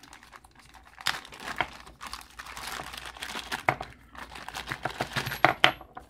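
Clear plastic zip-lock bag crinkling and crackling in the hands as it is pulled open, in irregular crackles that come thicker and louder in the second half.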